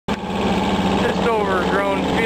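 A 16-horsepower John Deere garden tractor engine running steadily with an even firing pulse while it pulls a bush hog mower through overgrown brush. A man's voice comes in over it about a second in.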